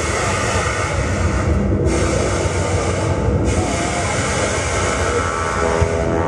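A live band playing a loud, dense wall of distorted sound with a rumbling low end. A hissy upper layer drops out briefly twice, about two and three seconds in.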